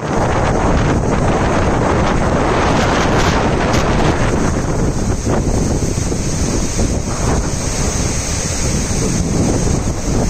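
Floodwater rushing steadily out through the open spillway gates of a swollen reservoir dam, with wind buffeting the microphone.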